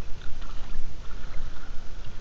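Water sloshing and moving around a waterproof camera housing, heard as a muffled low rumble with scattered small clicks and knocks, as a stringer of fish and a float box are handled at the surface.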